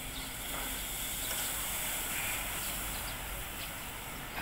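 Steady outdoor background noise: an even hiss with a low hum underneath, with no distinct event standing out.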